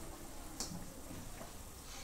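Quiet room tone with a short faint click a little over half a second in and a fainter one later.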